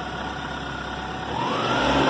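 A 1996 Toyota Camry's 2.2-litre four-cylinder engine idling cold, then revving up about a second and a half in, its pitch rising and holding higher.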